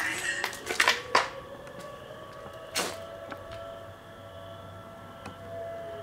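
A distant siren wailing: its pitch rises slowly for about three seconds, then holds steady. A few sharp knocks and clicks come in the first three seconds.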